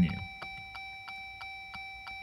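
Steady, rapid ticking, about three ticks a second, over a faint steady electronic whine inside the Jeep's cabin with the ignition on.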